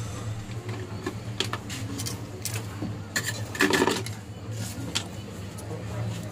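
Small metal hand tools and a phone circuit board handled on a workbench: scattered light clicks and scrapes, with a louder rattle about three and a half seconds in, over a steady low hum.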